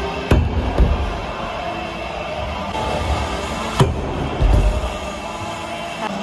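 BMX bike hitting a metal skatepark rail: a sharp clank about a third of a second in and another just after, then a second clank near four seconds in followed by a heavy low thud of the landing, over steady background music.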